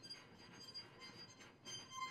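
String quartet playing very softly: faint, thin high bowed tones held steady, with a new note coming in near the end.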